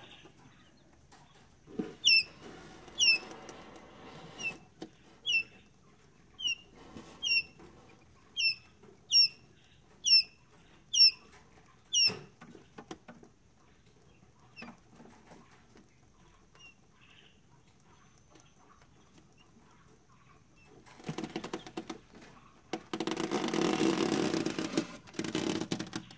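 A newly hatched Pharaoh (Japanese) quail chick peeping: about a dozen short, high, sharply falling peeps, roughly one every three-quarters of a second, over about ten seconds. Near the end there are a few seconds of noisy rustling.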